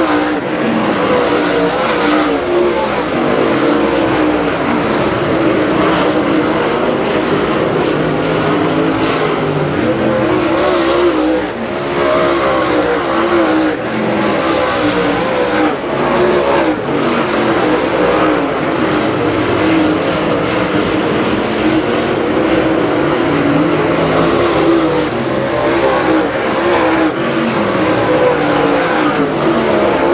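A pack of dirt late model race cars at racing speed, their V8 engines running hard. Several engine notes overlap, each rising and falling in pitch as the cars accelerate out of the corners and pass by.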